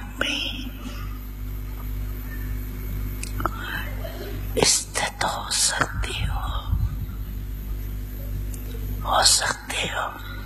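A woman speaking slowly into a microphone in Hindi, a few words at a time with long pauses between, over a steady low electrical hum.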